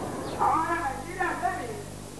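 A man's voice, its pitch gliding up and down, over a steady low hum.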